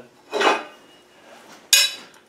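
A short, sharp metallic clink near the end, with a brief ring, as a ground-down steel 32 mm spanner and a homemade steel fan-pulley holding tool knock together while being fitted. A softer, duller noise comes about half a second in.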